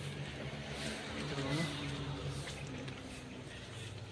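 Outdoor street ambience: a steady background hiss and hum with faint, distant voices about a second in.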